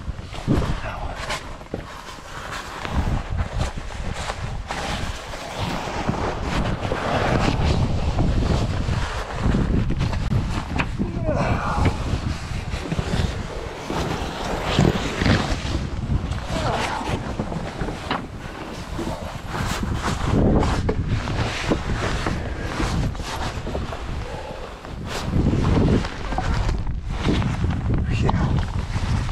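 A person crawling through a tight rock passage, with close, continuous scuffing and scraping of clothing and body against the rock and irregular knocks. Underneath is a rumbling buffet of air on the body-mounted microphone from the cave's constant breeze, and audible breathing.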